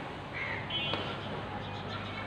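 Aerated water in a biofloc tank bubbling and splashing steadily, with a steady low hum underneath. A bird calls briefly about half a second in.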